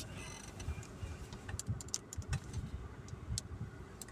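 Low, steady rumble of a car's engine and tyres heard from inside the cabin while driving slowly, with a few faint clicks.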